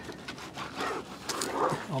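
Soapy wet sponge scrubbing an alloy car wheel rim, in uneven rubbing strokes.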